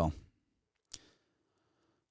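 A man's speech trailing off, then a single short sharp click-like sound about a second in, followed by quiet room tone.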